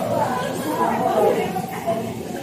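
Several people's voices chattering indistinctly in a large indoor hall.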